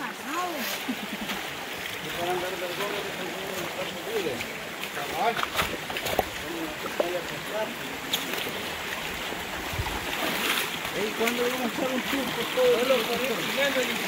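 Shallow rocky stream running steadily over stones, with a few sharp knocks and splashes from people stepping through the water and over the rocks.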